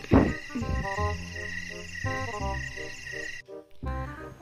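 Steady night chorus of croaking frogs and chirping insects under light background music of short melodic notes, with a brief vocal sound just after the start. Both the chorus and the music cut off suddenly near the end.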